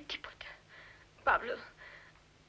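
Whispered speech: a single name spoken softly and breathily in film dialogue, over a faint low hum.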